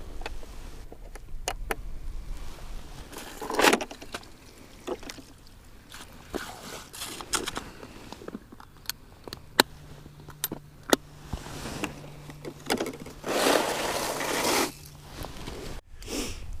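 An ice-fishing tip-up being handled and set over a hole: scattered sharp clicks and rattles, with a few longer bursts of rustling, the loudest near the end.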